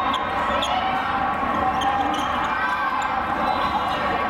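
Indoor volleyball play in a large, echoing hall: sharp slaps and knocks of volleyballs being hit and bouncing, over a steady hubbub of players' and spectators' voices.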